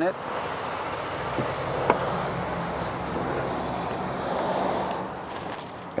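Steady outdoor background noise, an even hiss with a faint low hum, and a light click about two seconds in.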